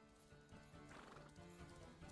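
Faint horse sound effect: hooves clip-clopping and a horse neighing, over background music.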